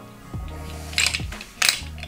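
Two sharp metallic clicks, about a second in and again past halfway, as the metal balls of a ball-pyramid puzzle's pieces knock against each other while being fitted together. Steady background music plays underneath.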